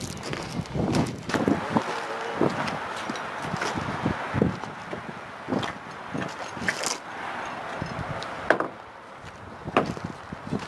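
Irregular knocks and thuds of a lathe being secured in a trailer: boots on the trailer floor and the strap and cabinet being handled, over a steady rushing noise.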